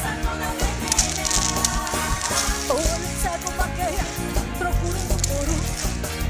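Live band playing an instrumental forró number for a quadrilha dance, with a steady driving beat and a wavering melody line over it.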